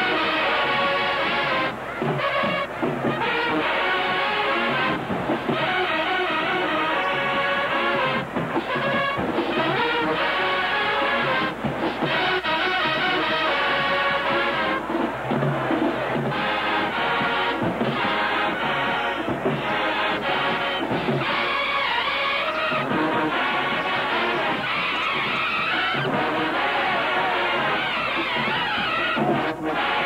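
Large HBCU show-style marching band playing loudly in the stands, full massed brass with sousaphones, with a few very short breaks between phrases.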